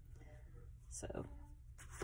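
Quiet room with a steady low hum and faint soft rustling; a single short word is spoken about a second in.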